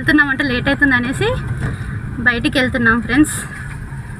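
A woman talking in two short stretches over the steady low rumble of a moving car, heard from inside the cabin.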